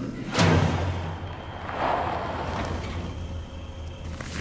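A sudden loud bang about half a second in, then the low steady rumble of a car's engine heard from inside the cabin, with a swell of noise around two seconds in.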